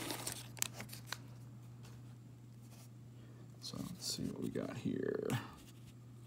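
Faint handling of an opened trading card pack and its cards: a couple of light clicks in the first second, then rustling and crinkling of the wrapper and card stack about four to five seconds in.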